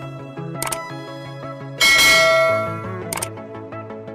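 Electronic intro music with a loud bell-like ding about two seconds in that rings and fades over about a second, as the subscribe button and notification bell animation appears. Two short sharp clicks sound before and after the ding.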